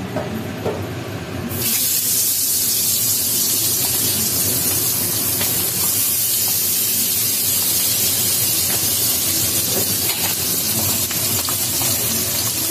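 Pabda fish frying in hot oil in a wok: a loud, steady sizzle that starts suddenly about a second and a half in, as the fish goes into the oil.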